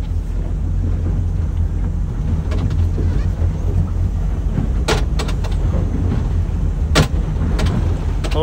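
8.2-litre MerCruiser V8 sterndrive engine of a bowrider running at low speed, a steady low rumble with water and air noise over it. Two sharp knocks come about five and seven seconds in.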